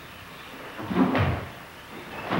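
A karateka's bare foot thudding on a wooden dojo floor with a sharp rustle of the cotton gi as a kata technique is executed, once, about a second in, over a faint hiss from the film soundtrack.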